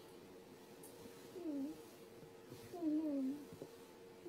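Two short, wavering vocal sounds, a brief one about a second and a half in and a longer one about three seconds in, over a faint steady hum.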